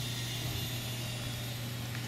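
A steady low hum under a constant, even hiss.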